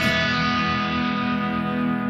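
Distorted electric guitar chord left ringing out as the final chord, sustaining evenly and fading slowly, its brightness dying away first.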